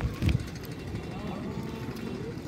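Faint distant voices over a steady low rumble, with a brief low thump about a quarter second in.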